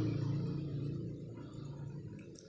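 A low, steady engine-like hum, gradually fading away.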